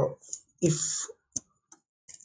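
A man's voice with a drawn-out hesitant 'uh' and then 'if', followed by a single sharp click and a fainter one near the end.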